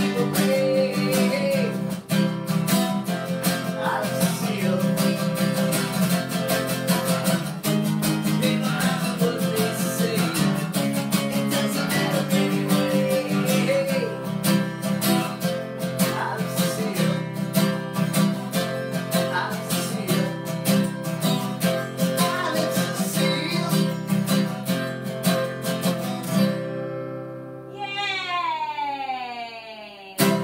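Acoustic guitar strummed in a steady rhythm, with a man singing over it at times. About three and a half seconds before the end the strumming stops, the last chord rings on, and falling pitch sweeps slide down through it.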